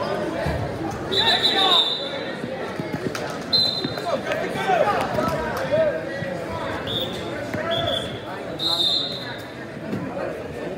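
Shouting from coaches and spectators echoing in a gymnasium during wrestling matches, broken by about five short, shrill referee whistle blasts.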